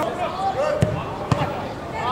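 Two dull thuds of a football being kicked, about half a second apart, amid players' shouts on the pitch.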